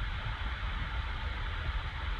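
Steady low rumble with an even hiss: the background noise of the room and recording, with no speech.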